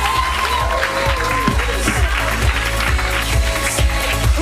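An audience applauding over background music with a steady bass.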